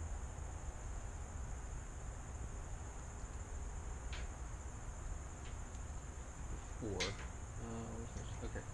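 Steady, high-pitched drone of insects in the surrounding woods, with a few faint light clicks.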